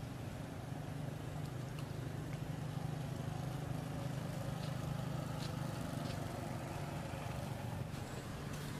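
A steady low engine hum, like a motor vehicle running nearby, with a few faint ticks.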